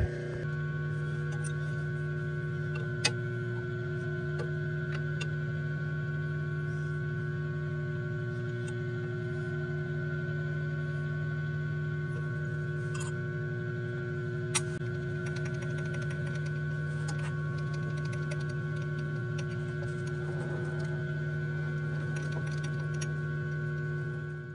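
Surface grinder running steadily, with a constant motor and wheel hum and no grinding contact. A few light metallic clicks come from setting up the work, one about three seconds in and one about fourteen seconds in.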